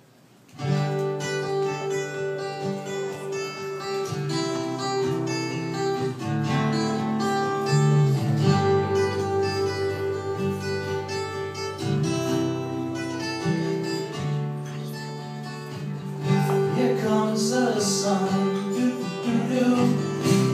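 A small group of men singing to acoustic guitars. The music breaks off for a moment right at the start, then runs on with long held notes.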